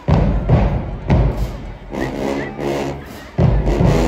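HBCU marching band playing in the stands: heavy bass drum hits with sustained pitched band sound between them. A loud hit comes near the end.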